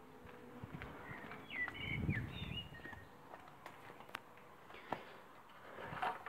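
Faint outdoor sound: a few short bird chirps about one and a half to two and a half seconds in, with soft footstep-like thumps and a few scattered clicks.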